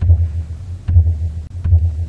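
Large temple drum struck three times with a padded mallet, deep booming strokes a little under a second apart.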